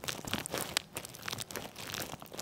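Rustling and crinkling with many small irregular clicks, from hands and a body shifting on a chiropractic treatment table.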